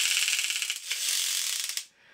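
Small electric motor of a vintage battery-powered toy Aston Martin driving its gear train, with the machine-gun clicker ratcheting rapidly. It cuts off suddenly near the end.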